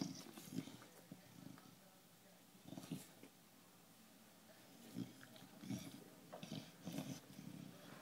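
Faint breathing and snuffling noises from an English bulldog, a few short sounds every second or two, as it mouths a plastic bottle.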